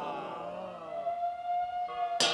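A siren wail: falling tones fade out in the first second, then a single steady tone is held from about halfway through.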